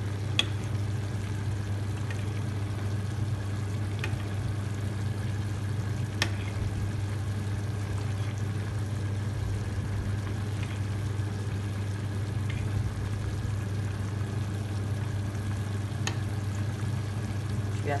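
A metal spoon clinking now and then against a clay tajine as juices are spooned over the simmering potatoes, over a steady low hum.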